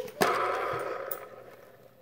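Plastic game-board spinner flicked with a sharp click, then whirring as the arrow spins and fading away over nearly two seconds as it slows down.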